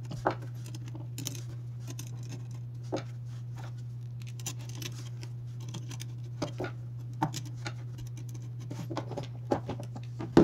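A screwdriver turning small screws into phone-mount clips on a perforated metal plate by hand: irregular light clicks and small scrapes of metal parts, over a steady low hum.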